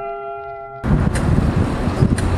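Held music notes stop abruptly just under a second in, giving way to loud outdoor city noise: a steady rumble of street traffic with a sharp tick or two.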